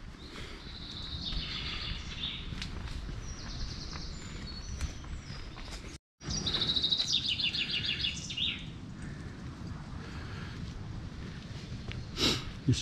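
Woodland songbirds singing: several short trills of high notes, the clearest a quick run of notes falling in pitch a little after halfway, over steady low background noise.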